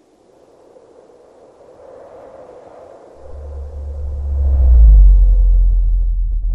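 Logo-animation sound effect: an airy whoosh that swells over the first few seconds, then a deep bass rumble that comes in and builds to its loudest near the end, with a short falling low tone.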